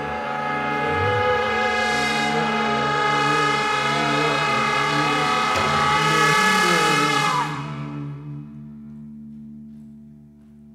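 Large improvising ensemble of voices, brass, woodwinds, strings and accordion holding a loud, dense sustained chord cluster with wavering sung pitches. It breaks off about three-quarters of the way through, leaving a quieter low held tone.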